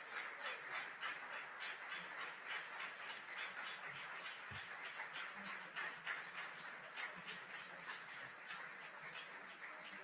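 Audience applauding steadily, thinning slightly toward the end.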